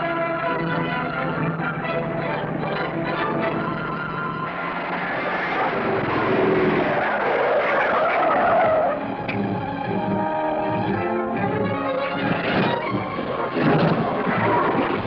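Orchestral film score playing over a car chase. A car's tyres skid and screech for several seconds about a third of the way in.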